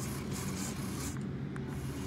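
A hand rubbing and handling the plastic housing of a Power-Pole Micro Anchor, over a steady low rumble, with a faint tick or two.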